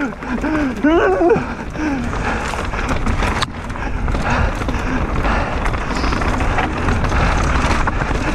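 Mountain bike riding fast down a dry, stony dirt trail: continuous tyre noise over loose dirt and rocks, with a steady low rumble and many short rattles and knocks from the bike. A brief vocal exclamation about a second in.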